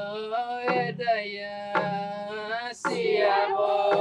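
A group singing a traditional Papua New Guinean Central Province song, accompanied by hand drums struck about once a second with a low thump.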